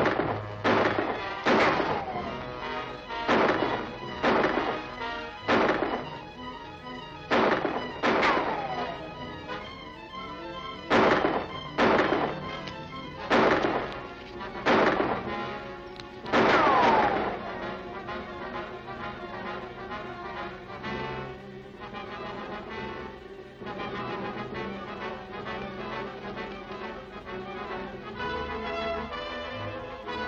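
Gunfire in a film shootout: around fifteen irregularly spaced shots over the first seventeen seconds or so, several trailed by a falling ricochet whine. Dramatic orchestral background music runs under the shots and carries on alone after they stop.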